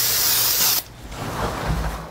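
Aerosol spray can hissing in one burst of about a second that cuts off suddenly, spraying cleaner onto the cab floor to remove grease, followed by fainter rubbing of a rag wiping the floor.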